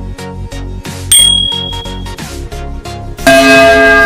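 A bell-ringing sound effect for a YouTube notification-bell icon, a loud ring that starts near the end and fades slowly. A short high ding sounds about a second in, over a steady electronic music beat.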